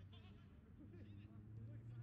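Faint, distant calls and shouts from football players over a steady low hum.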